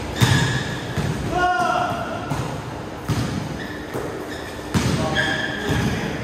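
Basketball play on an indoor court: the ball thuds on the floor several times, sneakers squeak, and players call out.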